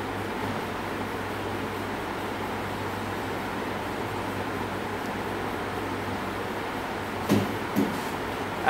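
Steady background noise with a low, even hum, like a fan or air conditioner running in a small room. There are two brief soft sounds near the end.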